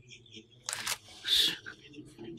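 Faint murmured voices and small handling noises at a podium microphone, with two short hissing bursts, one just before a second in and a louder one about a second and a half in.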